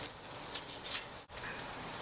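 Raw chicken breasts sizzling on a hot stainless-steel grill grate: a steady hiss with a few faint clicks.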